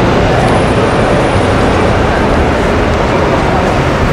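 Steady roar of city traffic in a busy square, an even wash of engine and tyre noise with no distinct single vehicle.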